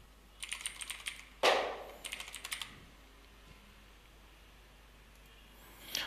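Typing on a computer keyboard: a quick run of keystrokes over the first couple of seconds, with one louder key strike about a second and a half in, then the typing stops.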